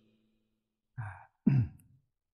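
Silence for about a second, then a man's short breath. Half a second later comes a louder, brief sigh-like voiced sound that falls in pitch, in a pause between sentences of speech.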